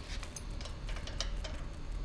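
Light, irregular metallic ticks and clicks of a feeler gauge and hand tools being worked against a Franklin 6A4-150 engine's valve rocker arm while the valve clearance is checked, over a steady low hum.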